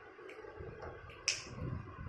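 A single sharp click a little over a second in, among faint low bumps and scuffling as beagle puppies play on a hard stone floor.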